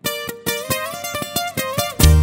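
Acoustic guitars playing a quick run of picked notes, about six a second, opening a regional Mexican song, with no bass under them.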